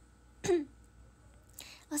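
A woman clears her throat once with a short cough about half a second in.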